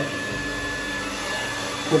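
Handheld hair dryer running steadily, blowing on damp hair, with a faint high whine over the rush of air.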